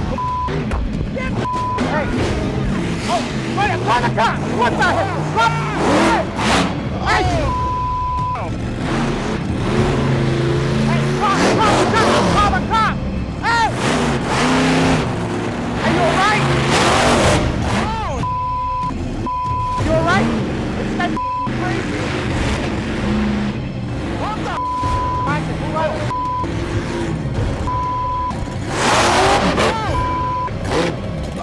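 Monster truck engine revving as it drives over and backs into a car, with people shouting over it, their swearing bleeped out with short tones, and music underneath.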